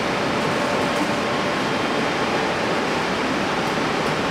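Steady rush of ventilation and air-handling noise in the ATLAS detector cavern: an even hiss with a faint steady hum in it.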